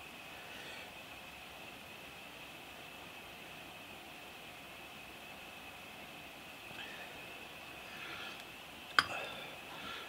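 Quiet room tone with a faint steady high hum, and soft handling sounds of a vernier height gauge being slid and adjusted against a metal cutter. A single sharp metallic click near the end.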